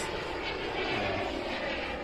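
SW190 model jet turbine of a 2.6 m radio-controlled L-39 jet in flight overhead: a steady, even rushing jet noise.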